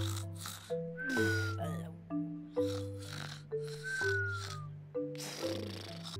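Cartoon snoring over background music: twice, a rasping in-breath is followed by a falling whistle on the out-breath, about three seconds apart.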